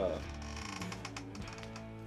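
Paper record sleeve and cardboard album jacket being handled: a quick run of light clicks, ticks and rustles.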